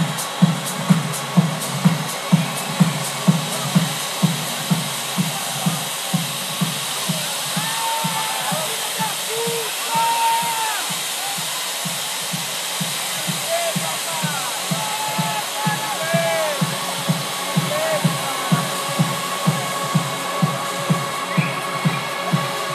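Live electronic dance music with a steady four-on-the-floor kick drum at about two beats a second under a dense hissing wash. The beat sits softer through the middle stretch. Scattered shouts and whoops from the crowd come through in the middle.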